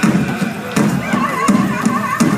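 Powwow drum group playing a song: a large drum struck in a steady beat, with singers' high, wavering voices coming in about a second in.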